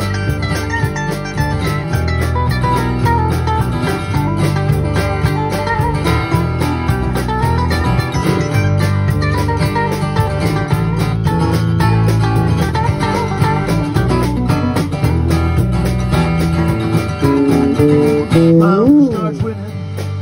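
A live country-rock band plays an instrumental break: guitar lead lines run over strummed acoustic guitar and a steady bass. Near the end a note bends up and back down.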